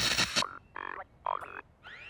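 Television sound as the channel changes: a brief burst of static hiss, then a few short buzzy electronic blips, and a rising electronic sweep near the end.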